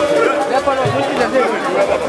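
Many voices singing and calling out together at once, with low drum thumps every second or so underneath.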